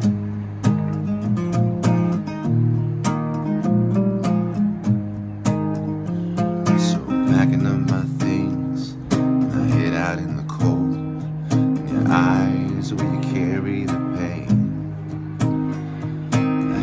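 Instrumental break: acoustic guitar strummed in steady chords, and about seven seconds in a harmonica joins with a wavering, bending melody over the guitar.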